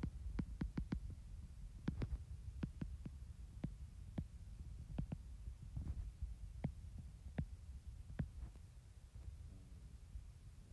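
Stylus tip tapping and ticking on a tablet's glass screen while handwriting: a scatter of light, irregular clicks, two or three a second, over a faint low hum.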